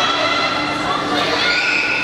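Young children shouting and cheering in high voices, with long held calls rather than words, louder and higher near the end, over a steady low hum.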